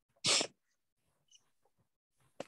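A single short sneeze from a person, one quick burst.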